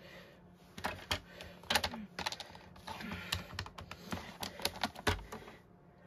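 Paper being slid along a paper trimmer's rail and scored: a run of irregular light clicks, taps and short scrapes.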